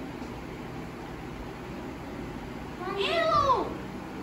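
A single drawn-out, meow-like call that rises and then falls in pitch, lasting just under a second about three seconds in, over a low steady background.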